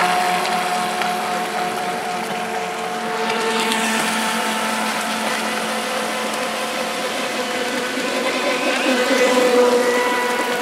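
Proboat Shockwave 26 radio-controlled boat running flat out, its small electric motor giving a steady, high whine over the hiss of the hull through the water. The whine holds an even pitch and grows a little louder near the end as the boat passes close.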